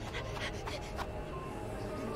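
Quiet soundtrack of an animated episode: low background music with a few faint clicks.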